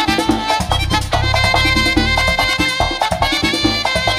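A live merengue típico band playing an instrumental passage: quick button-accordion and saxophone runs over a driving tambora and conga beat with electric bass.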